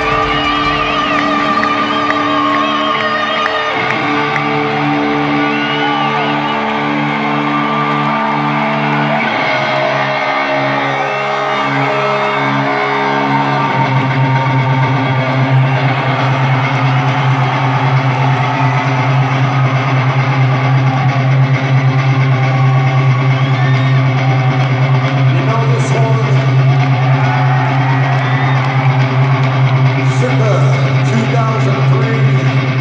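Loud amplified live rock-concert music heard from within an arena crowd: slow held chords that change every few seconds, giving way about halfway through to a steady low drone.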